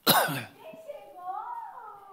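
A sudden loud burst that falls quickly in pitch over about half a second, then a high-pitched voice speaking.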